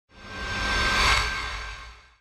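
Logo ident sound effect: a synthesized whoosh over a low rumble that swells to a peak about a second in and then fades away.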